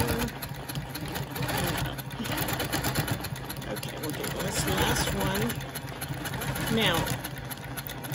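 Quilting machine stitching steadily as it is guided along an acrylic ruler: a fast, even needle patter over a steady low motor hum.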